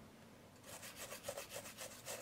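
Toothbrush bristles scrubbing a film camera body in quick back-and-forth strokes, several a second. The scrubbing starts about half a second in.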